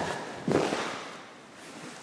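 A single brief, sharp sound about half a second in, fading over about a second: the movement of a karate technique done on the count, such as the swish of a uniform or the stamp of a foot.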